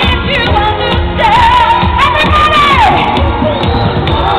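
A woman singing live over a disco band with a steady beat, sliding up into a long held, wordless note about a second in that falls away near the end.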